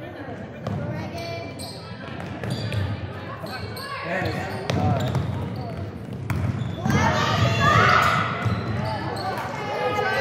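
A basketball bouncing on a hardwood gym floor during play, with voices of players and spectators calling out in the echoing gym, loudest about seven seconds in.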